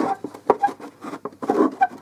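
Small hard-plastic toy parts clicking and tapping as a plastic signboard piece is handled and pushed into its slot, an uneven run of quick clicks with a few faint squeaks.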